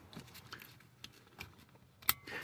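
Near silence, with a few faint soft clicks from handling a seat belt's webbing and metal hardware.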